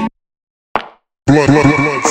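Sample-based hip-hop instrumental beat that cuts out abruptly into a break of near silence, with one short falling blip in the gap. The full beat drops back in about a second and a quarter in.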